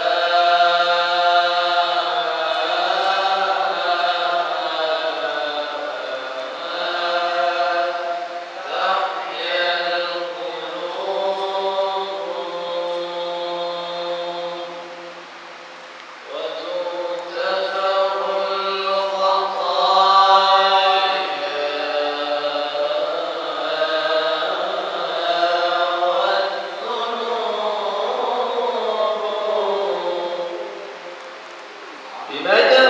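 Quran recitation (qirat) by a qari with companion reciters through a microphone: male voices hold long, ornamented melodic phrases. There is a short pause for breath about halfway through before the recitation resumes.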